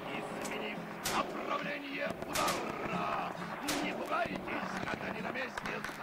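Gunfire in combat: a few sharp shots at irregular intervals, two of them close together about two and a half seconds in, over indistinct voices.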